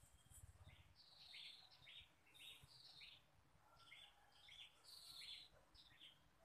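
A bird singing faintly: two runs of short, quick chirping notes, the first about a second in and the second about four seconds in.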